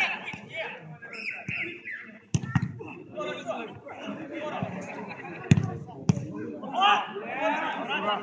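A football being struck three times with sharp thuds, about two and a half seconds in and twice more a little after five seconds, amid men shouting on the pitch.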